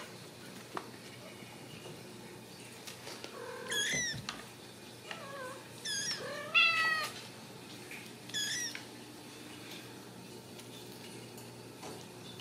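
Ragdoll kittens mewing: several short, high-pitched mews, the loudest about six and a half seconds in.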